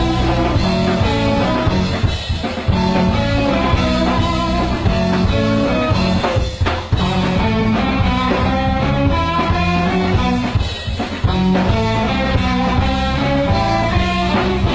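Live blues-rock band playing an instrumental passage: electric guitars, electric bass and drum kit through amplifiers. The loudness dips briefly about every four seconds, as the riff pauses.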